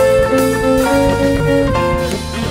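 Jazz band playing a blues shuffle, with an electric guitar line of short notes alternating high and low over bass, piano and drums.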